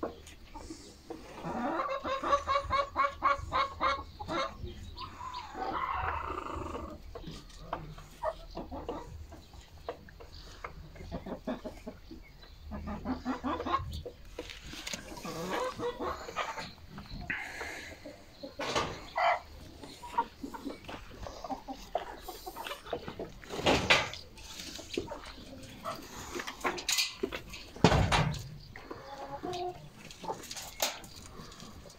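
Domestic chickens clucking and calling, including a fast run of repeated calls about two seconds in. A couple of sharp knocks stand out near the end.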